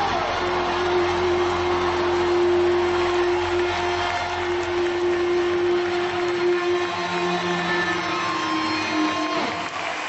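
A live rock band's amplified sound ringing out at the end of a song: one sustained tone held over a haze of hall noise, with a low hum that drops away about halfway through. Near the end the tone slides down and fades.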